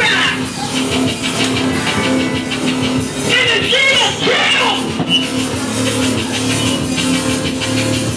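Live electronic punk band playing loud, with a steady held synth note running under a dense mix. A voice comes in briefly about three seconds in.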